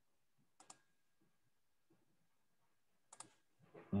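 Computer mouse double-clicking twice, about half a second in and again about three seconds in, with a brief "mm" from a voice right at the end.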